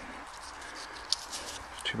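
Faint, steady outdoor background noise with a few soft clicks, then a man's voice begins near the end.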